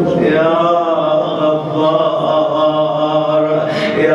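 A man's voice chanting an Arabic supplication in a long, drawn-out melodic phrase, the pitch held and slowly bending up and down.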